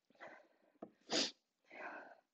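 A woman's breathy exhales after a sip of water, three in all, the middle one, about a second in, a short sharp burst of breath. A light click just before it as a glass is set down on a wooden sideboard.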